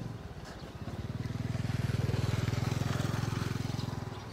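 A small engine running with a fast, even pulse, growing louder to a peak about two to three seconds in and fading near the end, as a vehicle passes.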